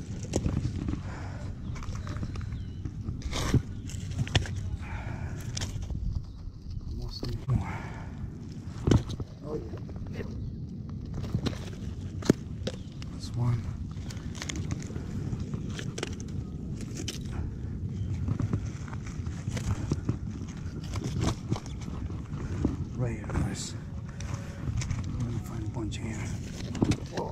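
Stones and pebbles on a rocky shore knocking and clattering as rocks are turned over by hand, in scattered sharp clacks over a steady low background rumble.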